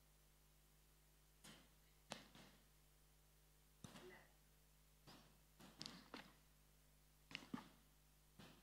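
Near silence: room tone with about a dozen faint, short knocks and clicks scattered in small clusters.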